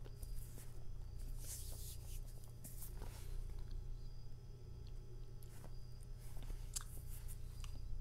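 Quiet sounds of a person tasting a sip of beer: faint swallowing and breathing, and a stemmed glass set down on a table, over a steady low hum.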